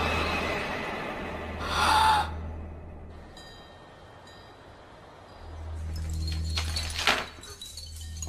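Horror film sound design: a low rumbling drone that swells and fades, broken by a sudden loud noisy hit about two seconds in and another sharp hit near seven seconds.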